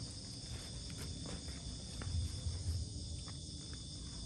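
Steady high-pitched chorus of night insects, several even tones held throughout, with a few soft low thuds about two seconds in.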